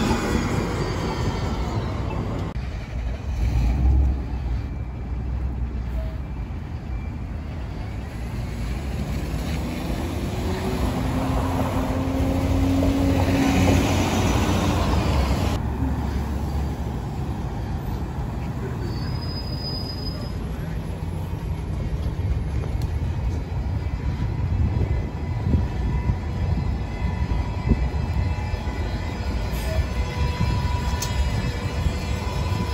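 City transit buses driving past in street traffic: engine and tyre noise, changing abruptly twice, with a whine that rises in pitch about halfway through.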